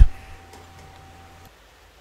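A sharp click, then a faint steady hum with a thin high whine. Both cut off suddenly about one and a half seconds in, leaving faint room tone.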